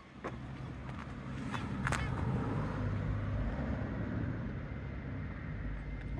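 Low, steady rumble of a motor vehicle running nearby, swelling about two seconds in and then holding, with a few faint clicks.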